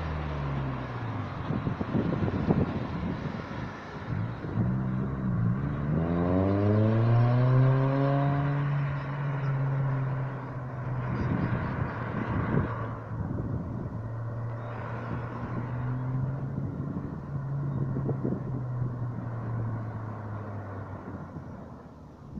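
Cars passing on the road with engine and tyre noise. About five seconds in, a vehicle accelerates away with a rising engine note, then a steady engine hum holds until near the end.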